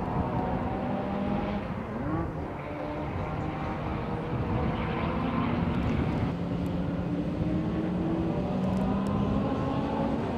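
Heavy diesel truck engines running as big semi-trailer transporters drive slowly past, a steady low rumble. There is a brief rise in engine pitch about two seconds in.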